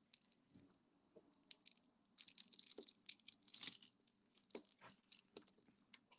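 Faint clinking and jingling of a sterling silver necklace's oval links knocking together as they are handled in the fingers, in a few short clusters of small metallic ticks.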